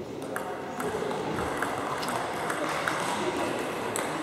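Table tennis ball clicking off the paddles and table during a rally, with sharp hits about two to three a second that stop near the end.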